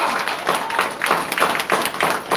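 A small audience applauding: many overlapping hand claps.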